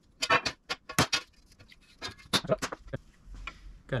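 Sheet-steel pieces clinking and clattering as they are handled and set down on a steel welding table: a quick run of sharp metallic hits in the first second, and a few more about two and a half seconds in.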